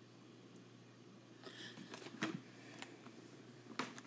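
Quiet room tone, then a few faint sharp clicks in the second half, with soft, faint noise between them.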